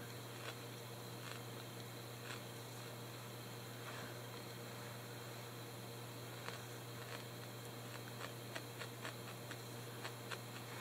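Faint room tone with a steady low hum, over which come soft ticks and rustles from fingers handling a piece of wool felt. The ticks are sparse at first and come more often in the second half.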